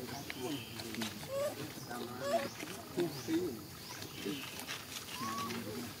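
Young macaques giving short rising squeaks, over low, indistinct voices talking throughout.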